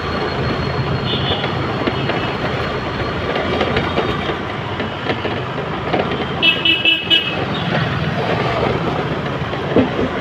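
City street traffic: a steady din of engines and road noise, with a short vehicle horn toot about a second in and a quick run of four or so horn beeps about six and a half seconds in.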